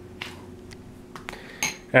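A handful of light, sharp clicks and clinks of small hard objects handled on a tabletop, spaced irregularly over a faint steady hum.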